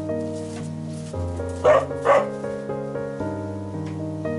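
Slow piano music with held notes. A dog barks twice in quick succession, about halfway through, louder than the music.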